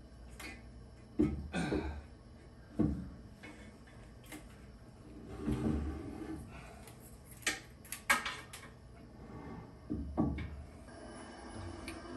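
A heavy steel rotary axis unit being set down and shifted into place on a metal mill table: scattered clunks and scrapes of metal on metal, with the sharpest clank about eight seconds in.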